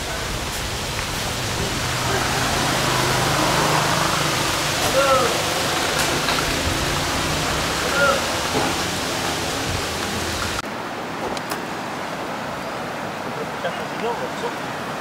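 Steady outdoor rushing noise with a few short chirps and a faint low hum. About three-quarters of the way through it drops suddenly to a quieter steady rush.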